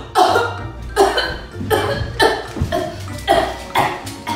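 A woman making a rapid series of about seven staged coughs and choking gasps, roughly two a second, acting out a fit.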